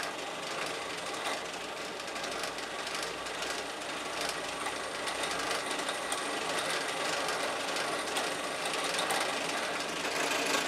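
Bench drill press running, its bit drilling a hole through 6 mm mild steel plate as the feed handle is pulled down; a steady, even machine noise.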